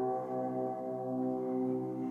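A held keyboard chord ringing on steadily, several notes sounding together.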